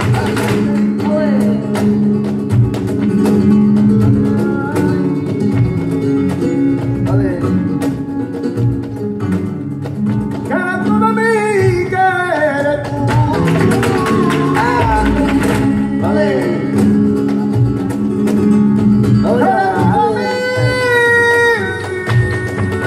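Live flamenco music: acoustic flamenco guitars playing under a singing voice. The voice sings ornamented, bending phrases that come to the fore about ten seconds in and again near the end.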